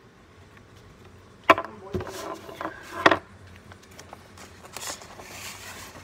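A few sharp knocks on a tabletop, the loudest about a second and a half in and two more within the next couple of seconds, as a marker is put down on the table; then paper rustling as a sheet of drawing paper is lifted and handled.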